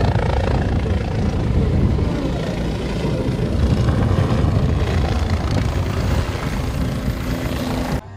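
Helicopter in flight, its rotor and turbine making a loud, steady noise that stops abruptly at the end.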